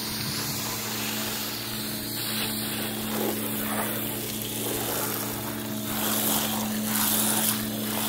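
A pressure washer running, its pump motor holding a steady hum under the hiss of a fresh-water spray hitting a jet ski's hull as the soap is rinsed off.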